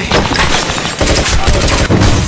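Handgun gunfire: many shots in quick succession.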